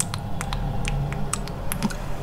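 Close-miked mouth sounds of a mascara spoolie being nibbled at the lips: about nine sharp, irregular wet clicks.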